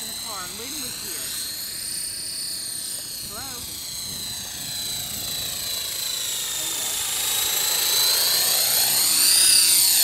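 Belt CP electric RC helicopter in flight: a high-pitched motor and rotor whine whose pitch wavers up and down as it manoeuvres in the wind. It grows louder and rises in pitch near the end as the helicopter comes closer.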